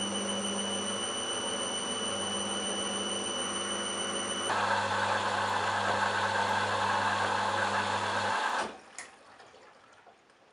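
Candy Smart Touch front-loading washing machine at the end of its 400 rpm intermittent spin: a steady motor hum with a high whine. About halfway through it changes abruptly to a louder, noisier sound as the high-water-level rinse begins, then cuts off suddenly near the end, followed by a single click.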